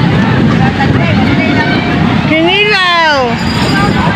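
People talking in the background over a loud, steady low rumble, with one voice calling out a long drawn-out note that rises and then falls about two and a half seconds in.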